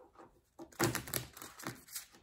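Tarot cards being handled by hand, a run of light clicks and taps that starts about half a second in.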